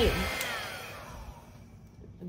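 Hair dryer blowing on wet pour paint, switched off with a click a little way in. Its motor whine then falls in pitch and fades as it spins down.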